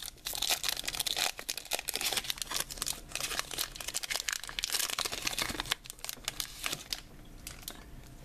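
Foil wrapper of a Pokémon trading-card booster pack crinkling and tearing as it is ripped open by hand. The crinkling eases off about six seconds in, leaving only a few faint clicks.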